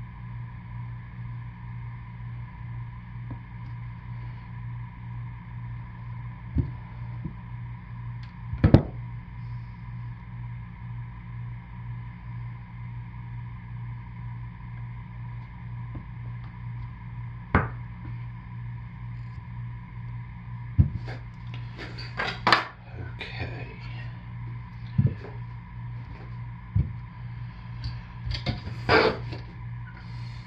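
Bars of cold process soap being handled and set down on a granite countertop: scattered knocks and taps, one louder knock about nine seconds in and a busier run of knocks near the end, over a steady low hum.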